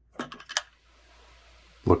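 A quick run of small plastic clicks and knocks as a blue plastic old-work electrical box is pressed into its drywall opening, all within the first half second.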